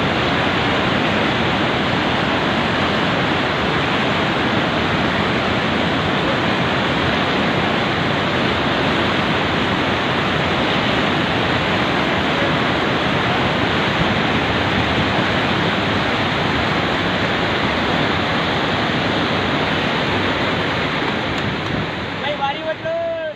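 Fast, turbulent mountain river in spate, its whitewater rushing as one loud, steady noise without a break.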